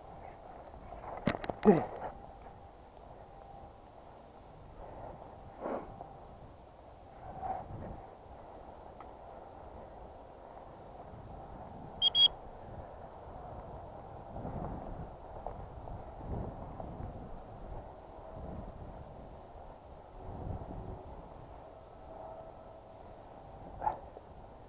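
Footsteps and rustling through tall dry grass. About twelve seconds in comes a short, high tone in two quick pulses.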